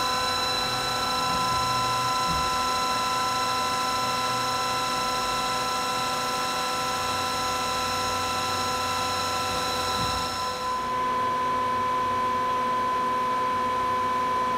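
Star SV-32 CNC Swiss-type lathe running with a steady whine of several pitches at once. About ten and a half seconds in, the higher pitches cut out and a lower whine carries on.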